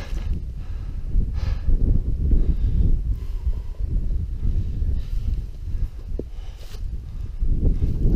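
Wind buffeting the microphone, a gusting low rumble that rises and falls.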